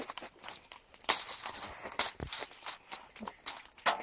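Wood fire in a metal fire bowl crackling, with irregular sharp pops and snaps.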